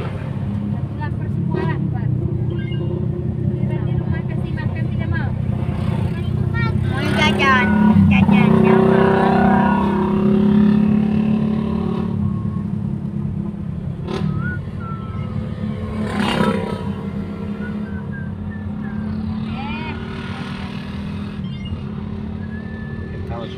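Car driving along a road, heard from inside the cabin: steady engine and tyre noise that grows louder from about eight to eleven seconds in, with indistinct voices at times.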